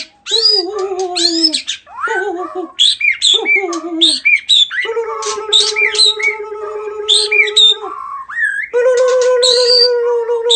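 A shama singing loud, rapid phrases of swooping whistled notes that rise and fall. A steady, low, wavering tone runs beneath the song from about halfway through, breaks off briefly, and returns near the end.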